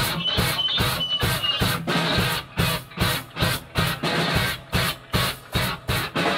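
Rock band playing live on electric guitars and drum kit. About two seconds in, the music breaks into short, evenly spaced stabs, about two a second, with brief gaps between them.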